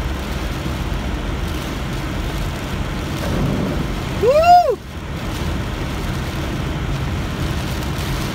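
Inside a moving car on a rain-soaked road: steady tyre and road noise with engine hum. About halfway through there is one short squeal that rises and falls in pitch.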